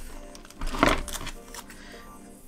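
Low background music, with one short crinkle a little under a second in as a small strip of clear plastic packing tape is handled.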